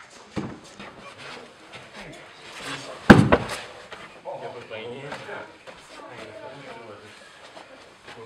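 A heavy thud about three seconds in, a body taken down onto a padded martial-arts floor mat, with lighter thumps and scuffs around it while voices murmur in the background.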